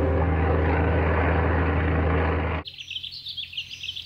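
Jet airliner in flight: a steady low engine rumble with hiss that cuts off suddenly about two and a half seconds in. Faint birdsong with short chirps follows.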